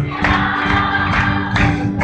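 Live gospel worship music: a congregation singing along with a band, over a steady percussive beat.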